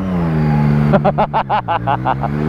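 Motorcycle engine running at a steady note, with a quick string of about eight short vocal sounds in the second half.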